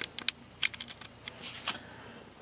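Light, irregular clicks and taps, about half a dozen, as small dug-up relics are handled and picked up off a tabletop; the sharpest tap comes near the end.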